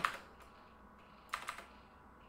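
Two quick key presses on a computer keyboard about a second and a half in, while code is being edited.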